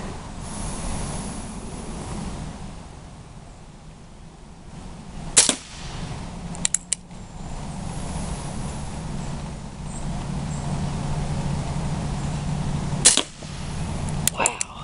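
CO2-powered Remington 1875 single-action replica air revolver firing pellets: two sharp shots about seven and a half seconds apart, with a few small clicks a second or so after the first, as the hammer is cocked for the next shot.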